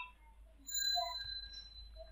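A few faint computer keyboard clicks as a web address is typed, over a faint high, thin steady ringing tone.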